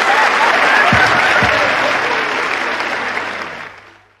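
Audience applauding, fading out near the end.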